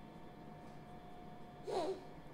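Quiet room tone with a faint steady hum, broken near the end by one short, breathy vocal sound from a woman that falls in pitch, like a sigh or an exhaled breath.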